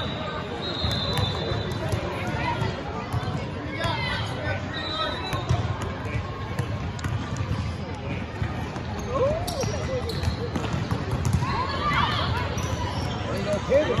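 Echoing indoor basketball gym: scattered voices of players and spectators over a steady hall background, with a basketball bouncing on the hardwood court.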